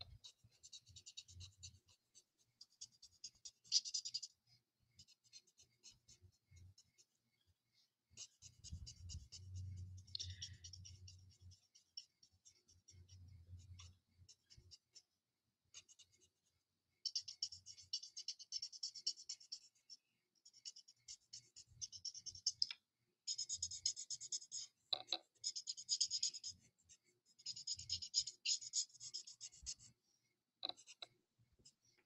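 Stampin' Blends alcohol marker coloring on cardstock: faint, quick scratchy strokes of the marker tip in short runs, sparse at first and busier through the second half.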